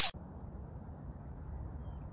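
The very end of a whoosh transition effect, then steady low rumbling background noise of an outdoor phone recording.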